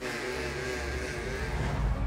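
Background music with a rushing noise that sets in suddenly and fades over about two seconds, as the music's low end swells near the end.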